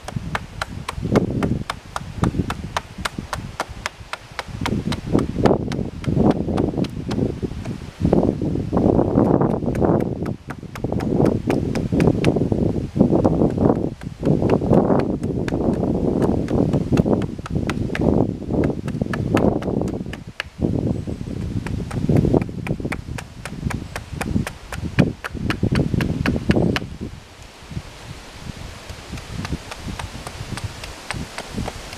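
Small carving axe chopping a wooden spoon blank on a chopping block: rapid light strikes, a few a second, as the spoon's outline is roughed out. Wind buffets the microphone in gusts under the chopping.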